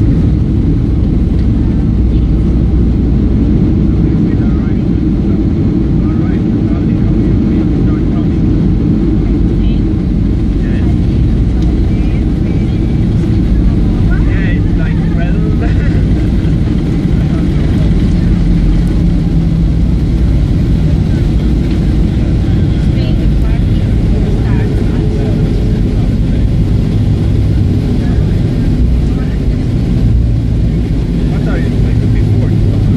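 Airliner cabin noise on the ground at night: a steady, loud low rumble of the engines and the plane rolling, heard from inside the cabin.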